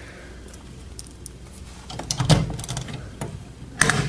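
Small hard-plastic clicks and rattles from LEGO pieces being handled as a minifigure is set into the model's cockpit, after a quiet start. A sharp plastic click comes near the end as the cockpit canopy is snapped shut.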